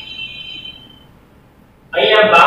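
Chalk squeaking against a blackboard as figures are written: a high, steady squeal that fades away about a second in, leaving faint room tone.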